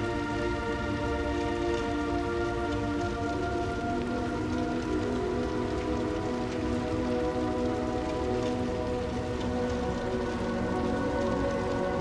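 Calm background music of sustained, held chords that change about four seconds in, over a steady, low, noisy rumble.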